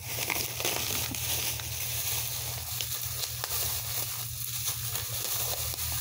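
Plastic shopping bag rustling and crinkling as items are rummaged out of it, with a few light ticks from handling.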